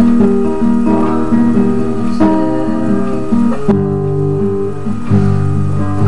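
Classical guitar fingerpicked: a steady run of plucked arpeggiated chord notes, changing to a lower bass chord a little past the middle.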